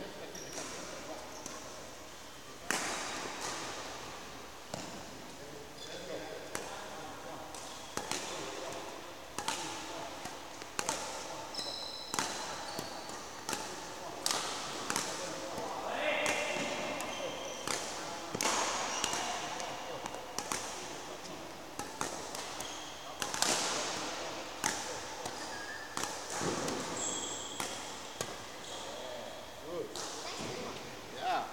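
Badminton rackets hitting shuttlecocks in a drill, sharp cracks at uneven intervals of about a second, echoing in a large sports hall, with shoe squeaks on the court floor.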